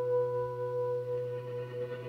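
Live band music: a ringing chord held over a low steady drone, slowly fading.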